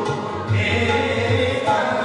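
Sikh shabad kirtan: a man singing with a harmonium's sustained reed chords and a few deep tabla strokes.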